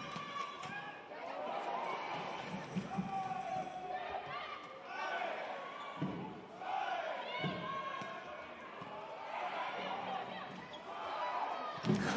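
Volleyball rally in a sports hall: a few sharp smacks of the ball off the players' hands and arms, short squeaks and shouts from the players on court, over a steady crowd din that swells near the end as the point is won.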